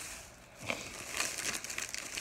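Plastic packaging crinkling and rustling as it is handled, starting about half a second in.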